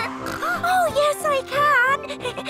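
Cartoon characters laughing in a run of short, bouncing voiced laughs, over light background music.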